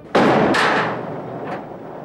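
A sudden loud crash, with a second hit about half a second later and a noisy tail that fades over about a second, then a faint knock near the end.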